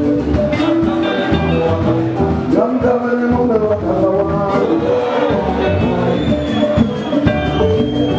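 Live chimurenga band playing: electric guitar, bass guitar and drum kit with a singer, over a steady beat.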